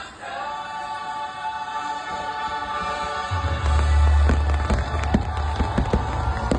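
Fireworks show soundtrack with a choir singing long held chords; from about three seconds in, fireworks start going off over the music, with deep booms and sharp cracks.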